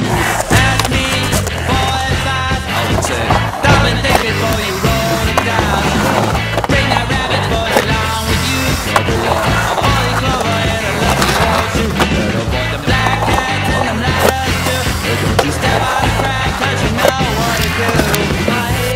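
Skateboard wheels rolling on a concrete bowl, with scattered sharp knocks of the board, under a loud rock music soundtrack.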